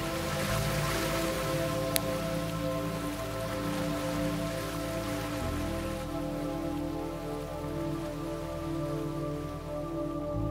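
Slow ambient meditation music: sustained held chords whose bass note shifts about every five seconds. Under it runs a steady hiss of surf washing in, fullest in the first few seconds and then thinning.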